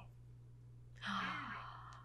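A person lets out a short, breathy, voiced sigh about a second in, over a steady low hum.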